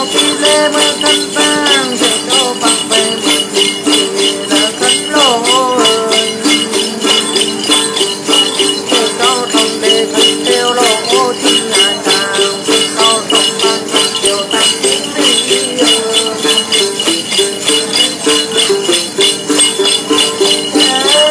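Tày-Nùng Then singing: a man's voice sings a gliding melody over a đàn tính lute, with a cluster of jingle bells shaken in a steady, even pulse throughout.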